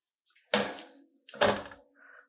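Small metal toaster-oven tray set down and shifted on gas stove grates: two metallic clanks about a second apart.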